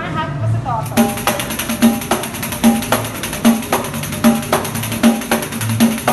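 Pandeiro played in a fast, even samba-style pattern, about four strokes to each accented beat, with the jingles ringing on every stroke and a deeper accent roughly every 0.8 seconds. The playing starts about a second in, after a few words of speech.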